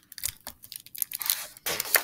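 Page of a large picture book being turned by hand: a series of paper rustles and swishes, loudest near the end.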